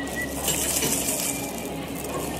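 Brief crinkly plastic rustle, starting about half a second in and lasting under a second, as gloved hands peel apart an imitation crab stick.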